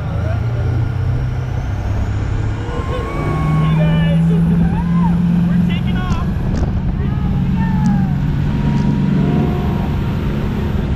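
Parasail boat's engines running hard, their pitch stepping up about three seconds in as the boat throttles up to launch the riders, over a steady rush of wind and water.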